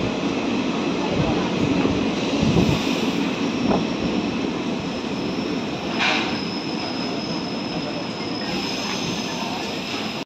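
Passenger train coach heard from its open doorway, running slowly along a station platform: a steady rumble and clatter of wheels on rail, with a thin, steady high squeal from the wheels setting in about halfway as the train slows.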